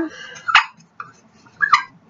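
A few short clicks and knocks as the plastic cap of a metal water bottle is handled and worked, with a brief squeak near the end.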